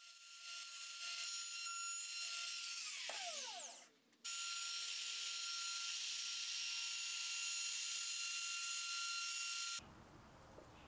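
Router running at full speed with a steady high whine as its bit cuts the edge of a cherry board. About three seconds in the motor winds down with a falling whine. After a short gap a router runs steadily again, chamfering the edge, and cuts off abruptly near the end.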